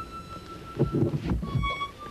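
A lone high wind instrument plays a slow air in long held notes, stepping from one sustained note to a slightly lower one about a second and a half in. Partway through, a burst of low rumbling thuds is louder than the music.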